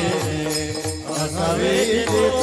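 Men singing a devotional Varkari bhajan together in chorus, with small brass hand cymbals (taal) clashing in time.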